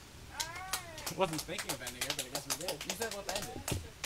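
A few people clapping sparsely, in irregular claps, as a song ends, under quiet voices, one of them a high sliding call near the start.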